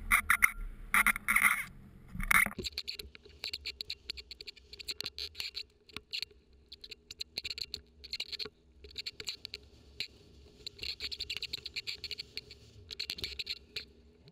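Faint, muffled snowmobile running, a low steady hum under irregular crackling and scratching noise.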